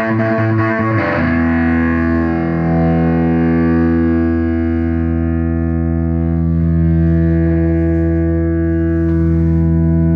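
SG electric guitar played through a Henretta Engineering Purple Octopus octave fuzz pedal. A second of quick picked notes is followed by a single fuzzed chord, struck about a second in, that rings on thick with harmonics.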